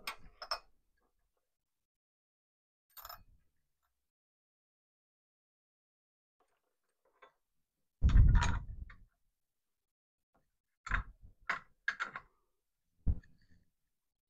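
Scattered knocks and clinks of a metal hand tool and parts against a cast pulley held in a bench vice. A louder knock with a dull thump comes about eight seconds in, then several sharp clicks close together near the end.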